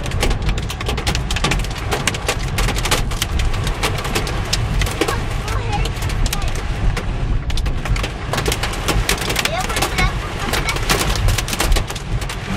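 Hail pelting a car's roof and windshield, heard from inside the cabin: a dense, unbroken clatter of hard hits over a steady low rumble.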